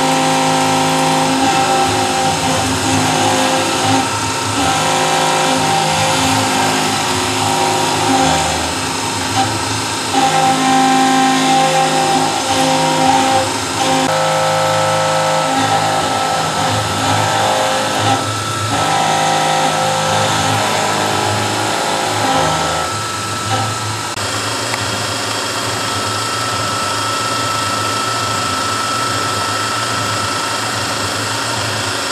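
CNC milling machine's spindle and end mill cutting a solid steel block under a coolant spray, with a steady mechanical whine over cutting noise. The pitch shifts every few seconds as the cut changes.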